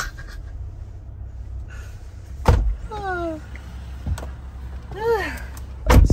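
A Jeep's diesel engine idling, heard from inside the cabin, while a car door is opened with a sharp knock about two and a half seconds in and slammed shut, the loudest sound, at the very end.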